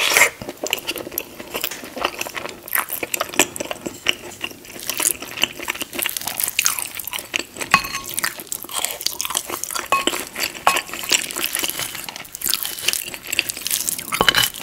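Close-miked chewing and wet mouth sounds of eating soft shepherd's pie: many irregular smacks and clicks. A wooden spoon scoops from the ceramic dish about halfway through.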